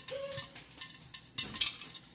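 Popcorn kernels beginning to pop in an electric stirring popcorn maker heated with oil: several scattered sharp pops over a faint sizzle.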